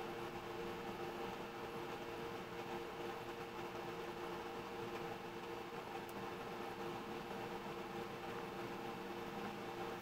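Steady mechanical hum: a few constant low tones over an even hiss, unchanging throughout, with no separate sounds.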